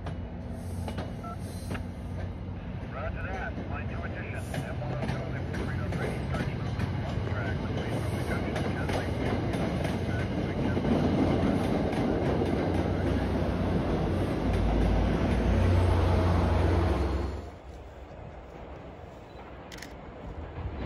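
MBTA commuter rail train, led by a single-level cab car, passing close by into a tunnel: a steady rumble of wheels on rail that grows louder and deeper over its last few seconds, then cuts off suddenly to a much quieter background.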